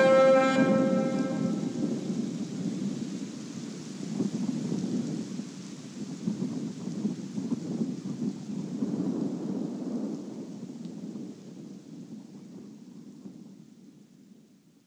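The song's last sustained notes die away in the first second or two, leaving a rain-and-thunder ambience, a hiss with a rolling low rumble. It fades out gradually.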